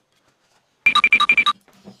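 A short bell-like trill sound effect: about seven rapid ringing strikes on the same pitch within half a second, starting about a second in after silence.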